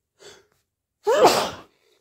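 A person sneezing: a quick breath in, then one loud sneeze about a second in that falls in pitch, from an itchy, runny nose.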